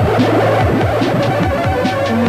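Early-1980s synth-pop played live, an instrumental passage on synthesizers: a steady low drone under a rapid run of short electronic drum hits that each drop in pitch.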